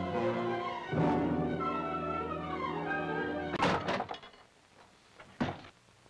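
Dramatic orchestral film-score music with a fresh loud chord about a second in, cut off by a loud wooden thunk of a door banging. A brief quiet follows, broken by one short knock near the end.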